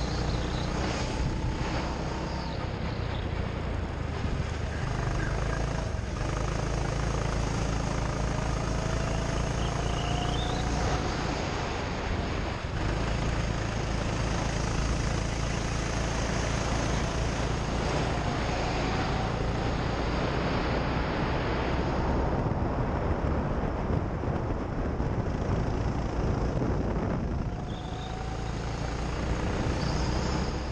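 Go-kart running at speed around a track, its motor note rising slowly in pitch several times as it accelerates out of corners, over a heavy rumble of wind on the onboard camera's microphone.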